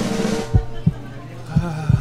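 Slow, heavy low drum beats, a few thumps spaced irregularly over a steady low hum: edited-in suspense music, with the tail of a voice in the first half second.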